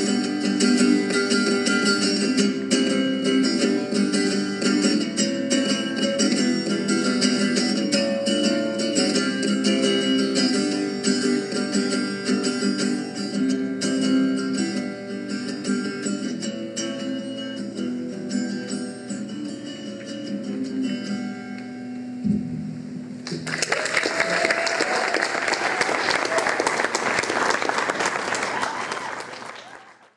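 Solo guitar playing the closing bars of a song, ending on a held low note a little past the middle. An audience then applauds until the sound fades out.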